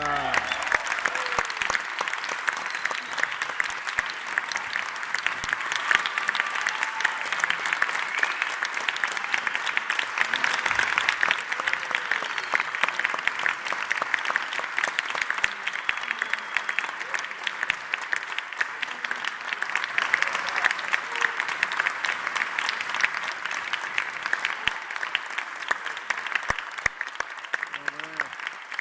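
Concert audience applauding steadily, a dense clatter of many hands clapping that starts as the band's last note dies away.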